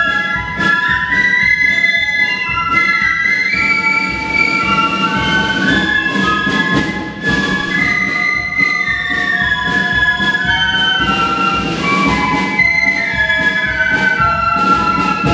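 A flute band playing a tune, several flute parts moving together in harmony over a steady beat.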